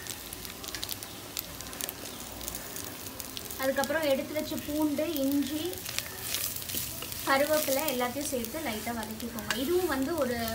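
Chopped shallots, grated coconut and garlic frying in oil in a clay pot, crackling steadily as a wooden spatula stirs them. A wavering voice without clear words rises over it twice, in the middle and later part.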